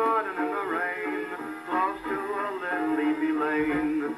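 A 1929 Victor 78 rpm shellac record of a dance band with a male vocal, playing acoustically on a wind-up His Master's Voice gramophone; the sound is thin and boxy, with no deep bass or high treble.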